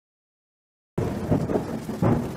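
Thunder rumbling with rain falling, starting suddenly about a second in.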